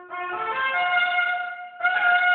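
Trumpet played in the screaming upper register, going for the double high G. A note enters and settles into a held tone, breaks off briefly near the end, and a new, louder note starts just before the end.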